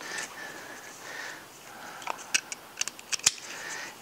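Nylon harness webbing rustling and sliding as a red strap is pulled and tightened, with several sharp clicks from the seat-belt-style buckle clips in the second half.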